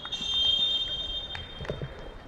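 Referee's whistle blown in one long blast of about two seconds, its pitch sagging slightly as it fades. It is the long last blast after two short ones, the usual full-time whistle.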